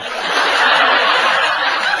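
A large audience laughing together, loud and steady.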